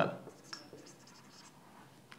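Marker pen writing on a whiteboard: faint scratchy strokes from about half a second in to about a second and a half in.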